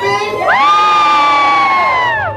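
An excited, high-pitched whoop: one voice glides up into a long held note about half a second in, then slides back down at the end.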